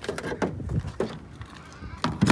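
Tesla Supercharger connector and its heavy cable being lifted from the charging stall's holster and handled: a few separate plastic clunks and knocks.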